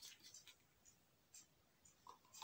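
Near silence, with a few faint, short ticks and rustles from a plastic spray bottle being handled.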